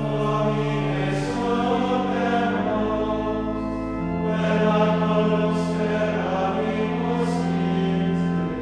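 Sacred choral music, with voices holding long sustained chords that shift twice partway through.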